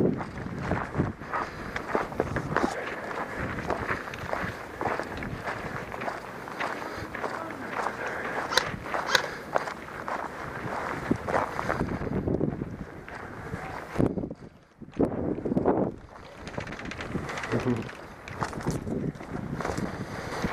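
Footsteps of a person walking steadily over dry dirt and grass, with a short break about fourteen seconds in.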